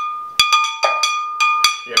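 A toddler tapping a metal spoon against a glass blender jar, about five uneven taps, each leaving a short clear ringing tone.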